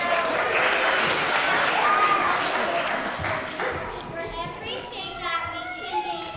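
Many children's voices chattering at once, with applause over the first few seconds, then higher, clearer children's voices near the end.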